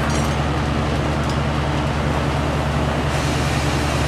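Steady rushing hiss of a bench-mounted oxygen-propane lampworking torch flame heating a borosilicate glass rod, over a steady low hum; the hiss grows a little brighter about three seconds in.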